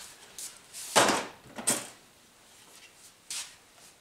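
Handling noises on a workbench: a plastic blister pack of guitar tuners set down and a wooden guitar neck picked up, giving a few short knocks and rustles about a second in, just before two seconds, and again past three seconds.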